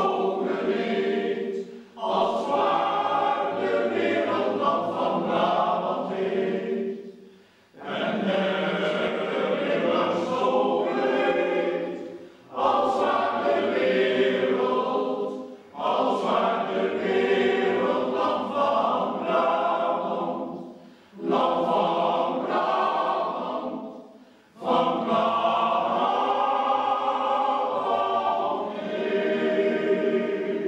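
Men's choir singing, in sung phrases of a few seconds each with short breaks between them.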